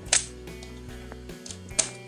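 Two sharp plastic clicks, one just after the start and one near the end, from a mains plug being worked in a power-strip socket, over quiet background music.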